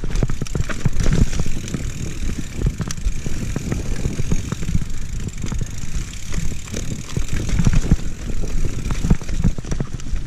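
Mountain bike descending a dirt forest singletrack: a steady low rumble of tyres and trail vibration, with frequent clicks and knocks as the bike rattles over roots and rocks.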